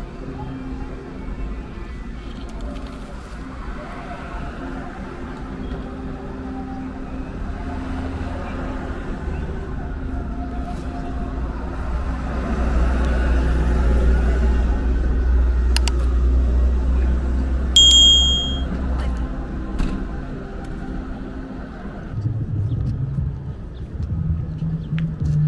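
Street noise of truck engines running, a steady low hum beneath a heavier rumble that swells through the middle and then eases off. A brief high metallic ring comes about three-quarters of the way in.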